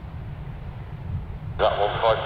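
Steady low rumble of an Airbus A380's Rolls-Royce Trent 900 jet engines as the airliner taxis. Near the end an air traffic control radio transmission cuts in, a thin, radio-quality voice.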